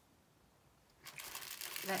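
Clear plastic packaging of a bagged set of diamond-painting drills crinkling as it is handled, starting about a second in after near silence.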